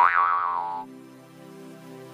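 A cartoon 'boing' sound effect with a wobbling pitch, cutting off a little under a second in, followed by soft background music with low held notes.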